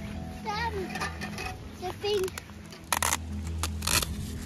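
A young child's voice calling out without clear words, over steady background music, with two short bursts of noise near the end.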